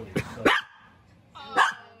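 A dog barking: two short barks close together near the start, then a louder one about a second and a half in.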